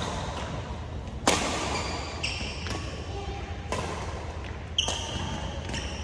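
Badminton rally in a large hall: rackets strike the shuttlecock with about four sharp cracks, each with a short echo. High squeaks of court shoes on the floor come twice between the hits.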